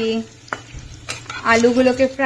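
Potato wedges sizzling as they fry in oil in a non-stick kadai, stirred with a steel spatula that clicks against the pan twice. A woman's voice is heard briefly at the start and again, louder, from about one and a half seconds in.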